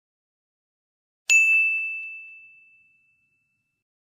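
A single bright, bell-like ding about a second in, ringing out and fading away over about two seconds.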